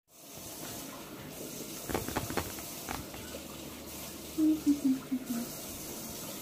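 Quiet room tone with a few light knocks about two seconds in, and a brief faint voice a little before the end.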